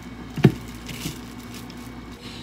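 A plastic squeeze bottle of oil set down on a wooden cutting board, one dull thump about half a second in. After it come faint crinkles of plastic wrap as a hand rubs oil over a potato.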